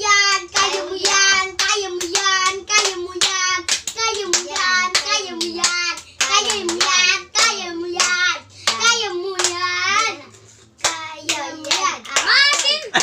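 Children chanting in a high sing-song voice while clapping their hands in a steady rhythm, about three claps a second, with a short lull a little before the end.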